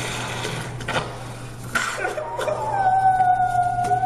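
A restrained man crying out in distress. About halfway through comes one long, high wail that falls slightly in pitch, after a stretch of scuffling noise.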